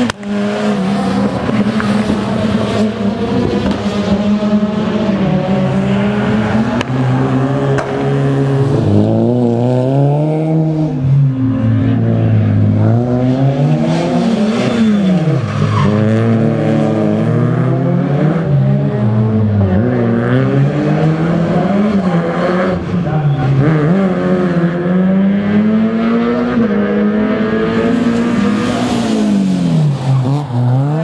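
Small hatchback rally cars' engines revving hard and dropping back, the pitch rising and falling again and again through gear changes and corners, with tyres squealing as the cars slide.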